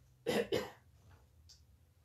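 A man coughing twice in quick succession, about a third of a second in.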